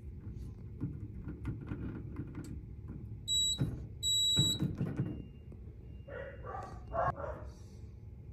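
Keys on a fire alarm control panel's keypad being pressed, with soft clicks throughout and two short high beeps from the panel a little after three and four seconds in, over a steady low hum.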